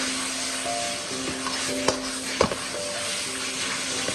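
Shimeji mushrooms and pork sizzling in a hot wok over high heat as they are stir-fried with a metal ladle, with a few sharp scrapes and clicks of the ladle against the wok.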